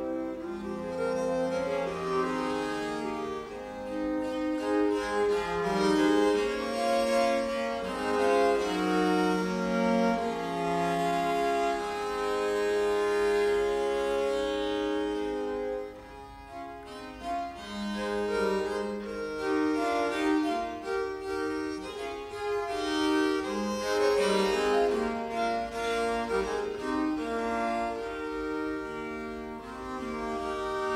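A consort of four viols playing bowed, interweaving melodic lines in several parts. The music thins briefly about halfway through, then picks up again.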